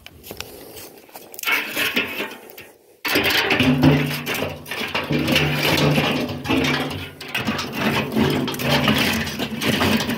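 Dry sticks and wood scraping and rattling inside a metal drum, starting suddenly and loud about three seconds in, over a steady low hum.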